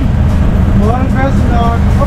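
Tuk-tuk (auto-rickshaw) engine running as it drives, a steady low rumble heard from inside the cab, with a man's voice talking over it.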